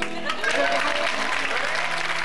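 Audience applauding, with background music holding a few steady low notes underneath.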